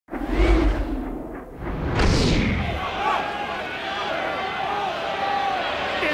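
Broadcast intro sting: a deep boom near the start and a whoosh about two seconds in. From about three seconds it gives way to a steady crowd hubbub with indistinct voices.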